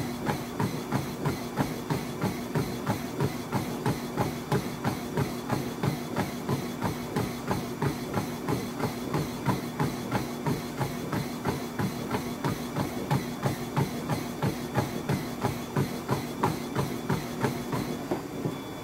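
Running footfalls pounding on a treadmill belt at sprint pace, about three strides a second, over the steady hum of the treadmill's motor and belt.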